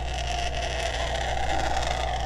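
Distilled water squirted from a plastic squeeze wash bottle into a plastic beaker, a steady stream with a hiss.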